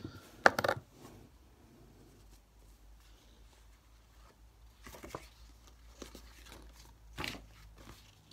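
Scratchcards and a coin being handled on a table: a few brief crinkles and light knocks, about half a second in, near five seconds and just after seven seconds, with quiet room tone between.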